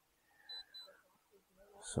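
Near silence broken by two brief, faint, high-pitched chirps, one right after the other, about half a second in.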